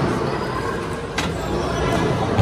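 Bowling balls rolling down wooden lanes, a steady low rumble, with one sharp clack a little over a second in.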